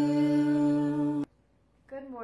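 A woman, a man and a young girl singing together, holding the long final note of a worship song; the note stops abruptly a little past the middle.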